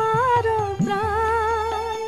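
Bengali song: a high voice holds long notes that waver in pitch. Under it, low drum strokes slide upward in pitch over a steady bass.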